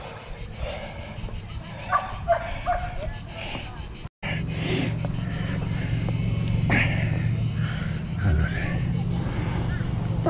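Faint, distant voices over a steady low hum, with the sound cutting out for a moment about four seconds in.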